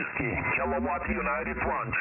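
A contest station's voice received over shortwave single-sideband on the 20 m amateur band through a software-defined radio. It sounds thin and narrow-band, with a low hum underneath.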